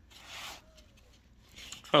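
A brief, soft rustle of molded pulp cardboard packaging being handled and worked loose, lasting about half a second near the start.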